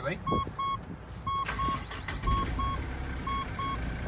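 Mitsubishi Pajero's dashboard warning chime beeping in short pairs, about one pair a second, with the ignition switched on. A low engine rumble comes in about two seconds in as the engine starts.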